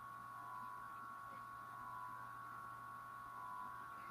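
Faint steady electrical hum: a low hum under a cluster of steady higher whining tones, with nothing else happening.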